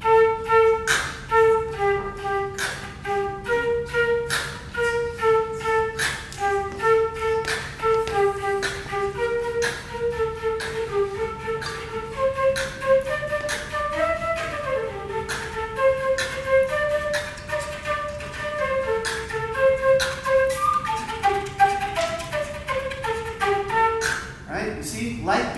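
Beatbox flute: a concert flute melody in short held notes, with light beatbox kick and snare sounds voiced through the flute in a steady beat. Flute notes stand in for the hi-hat 'ts' sounds. The melody climbs in the middle and comes back down near the end.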